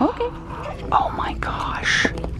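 Baby's voice: a short rising squeal right at the start, then a few short babbling sounds and a breathy one near the end.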